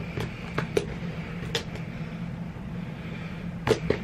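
A small handheld cutter working at the edge of a white cardboard box: several sharp clicks and scrapes, over a steady low hum.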